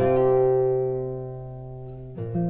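Stephen Hill 2a Fusion classical guitar, tuned DADGAD with a capo at the third fret, sounding a chord that is struck once at the start and left to ring, fading slowly over two seconds. Large-hall reverb trails the notes.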